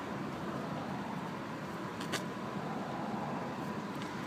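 Low, steady background noise with a faint steady tone, and one light click about two seconds in.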